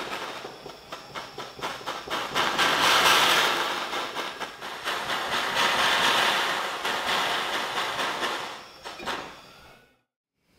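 Jeweller's soldering torch flame rushing while solder wire is melted into a joint on a gold piece; the noise swells twice and fades away near the end.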